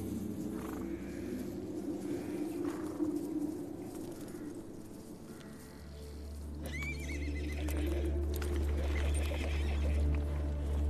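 A horse whinnies once, a trembling high call about seven seconds in, as mounted horses move about. A low, steady music drone runs underneath and swells in the second half.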